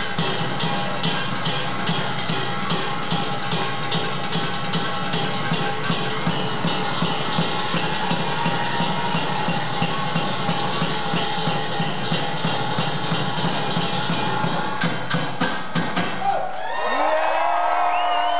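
A band's drum line playing live: a fast, driving rhythm on drum kit and percussion that stops about sixteen seconds in. The crowd then cheers and whistles.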